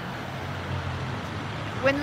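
A road vehicle's engine running with a steady low hum, a woman's voice starting just at the end.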